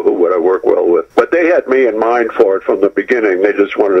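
A man speaking without pause over a telephone line, his voice thin and narrow.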